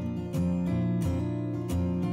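Acoustic guitar music: strummed chords at an even pace, about three strums.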